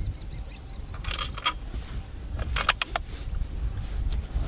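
Wind rumble on the microphone, with a bird chirping a quick run of about six repeated notes during the first second. A few sharp clicks come about a second in and again a little before three seconds.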